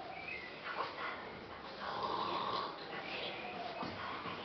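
Young children making pretend snoring noises, a few uneven, overlapping snores.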